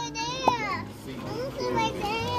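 Indistinct, high-pitched children's voices talking and chattering, with one short click about half a second in.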